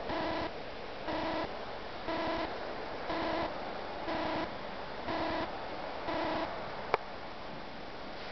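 An electronic beep repeating evenly about once a second, seven short beeps of one steady pitch, with a single sharp click near the end.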